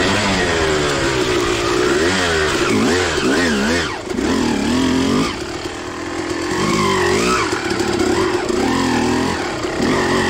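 Suzuki RM250 two-stroke single-cylinder dirt bike engine, heard on board, revving up and down again and again as the throttle is worked over a muddy trail. The revs drop briefly about four seconds in, and the engine is quieter on a closed throttle for a second or so before picking up again.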